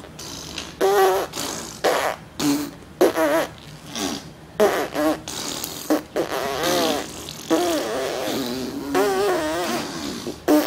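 Imitation fart noises made in a string of bursts, some short and some drawn out with a wavering pitch, by two people taking turns.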